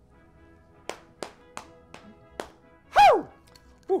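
Four sharp taps about a third of a second apart, then a short, loud cry that falls steeply in pitch.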